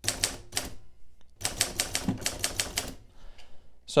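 Manual desktop typewriter being typed on: a few keystrokes, a short pause, then a quick run of about eight strokes. It is typed with the paper bail not holding the paper down, which makes it really loud.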